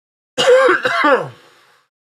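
A man clearing his throat: one loud vocal push of about a second, in two quick parts falling in pitch.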